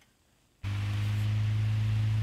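1938 Emerson 77646-AK electric desk fan switched on about half a second in: its motor comes on suddenly with a loud, steady hum and the rush of air from the spinning blades. It runs smoothly, with the blades well balanced.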